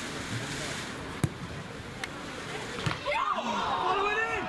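A football kicked hard about a second in, a sharp single thud, followed by two lighter knocks, then shouting voices near the end as the ball comes into the penalty area.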